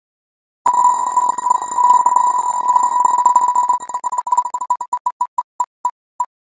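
Electronic ticking of an on-screen random name-picker wheel spun to draw a winner. It starts suddenly with rapid ticks that blur into one high beeping tone, then the ticks slow and space out as the wheel comes to rest.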